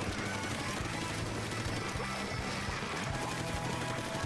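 Video game background music with a steady beat, mixed with faint in-game effects.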